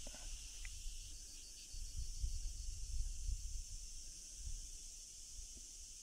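Outdoor ambience: a steady high chirring of insects, with a faint pulsing a little past a second in, over low uneven wind rumble on the microphone.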